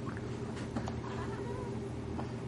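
A baby cooing softly, a few brief high-pitched sounds over a steady low hum.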